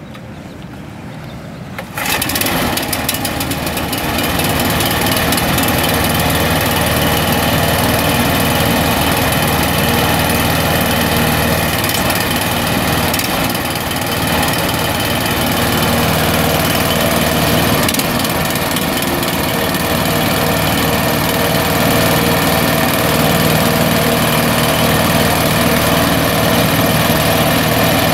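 8 hp Briggs & Stratton single-cylinder engine on a hydraulic reel trailer starting about two seconds in, then running steadily.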